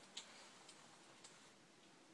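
Near silence: room tone with three faint clicks about half a second apart, from hands working at the front of a jacket.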